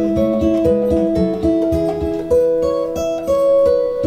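Gibson J-45 acoustic guitar played with a capo at the seventh fret: a run of picked notes, several a second, ringing into one another. It is playing clean, with no fret buzz, as a test of a fresh setup with no high or low frets.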